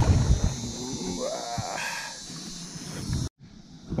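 Water and kayak-hull noise as a kayak comes ashore, with a short wavering wordless groan from a man in the middle. The sound cuts off suddenly near the end.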